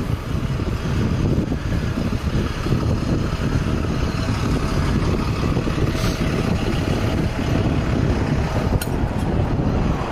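Steady wind rush and road noise on the microphone of a camera carried by a rider on a moving bicycle, with a couple of brief clicks about six and nine seconds in.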